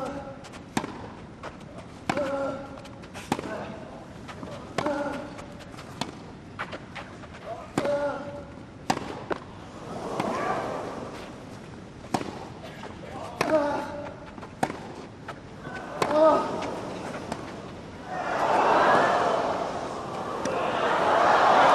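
Tennis rally: racket strings hitting the ball in turn, a sharp pock about every second and a half, most shots with a player's grunt on them. Crowd noise rises briefly mid-rally and swells near the end.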